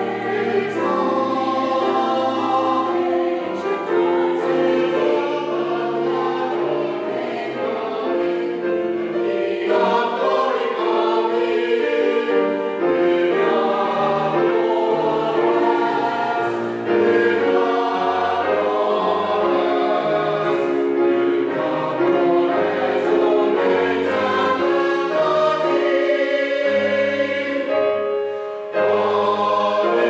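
Mixed church choir singing an anthem together, several voice parts at once, with brief breaks between phrases.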